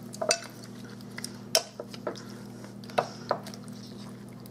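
Metal wire potato masher clinking against a glass bowl as it presses down into sliced, sugar-macerated strawberries: several sharp taps at uneven intervals.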